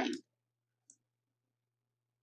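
The last of a spoken word, then near silence with a faint steady electrical hum and a single faint computer-mouse click about a second in.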